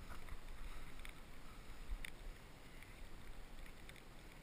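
Hand digging down into wet beach sand after a razor clam: faint wet scrapes and a few short clicks over a low rumble of wind on the microphone.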